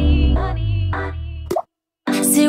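Pop song in a breakdown: the drums drop out, leaving a held bass note and sustained chord with a couple of soft clicks, then a short rising blip about a second and a half in, and the music cuts off to silence just before the song comes back in.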